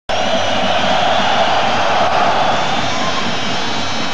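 Steady roar of a large football stadium crowd, as carried on a television broadcast.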